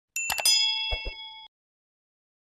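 Subscribe-button sound effect: a few quick mouse clicks, then a bright bell ding of several ringing tones that lasts about a second and stops.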